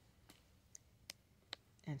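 A few faint, sharp clicks, about four in two seconds, as a plastic pouch of press-on nails is handled.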